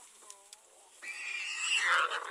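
An animal squealing: a faint short call, then about a second in a loud, high-pitched shriek that lasts just over a second.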